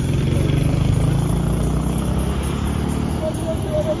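Highway traffic: the low engine rumble of a heavy vehicle such as a bus passing close, strongest in the first couple of seconds and then easing.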